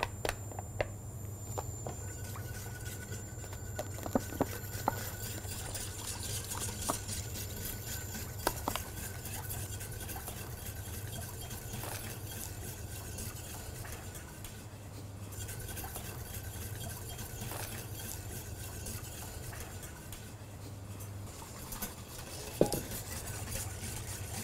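Wire balloon whisk stirring milk and cream in a stainless steel saucepan, its wires ticking quickly against the pan, with a few louder clinks. A low steady hum underneath stops about three seconds before the end.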